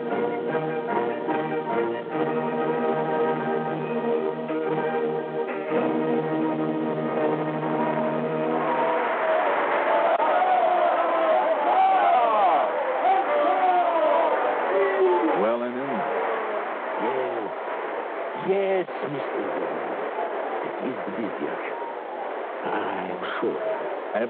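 Orchestral music: a held brass-and-orchestra chord for about eight seconds, then a violin line with sliding, wavering notes over the orchestra.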